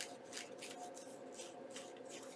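Foam ink-blending sponge on a handle rubbed around the torn edge of a paper circle, a series of faint brushing strokes against the paper.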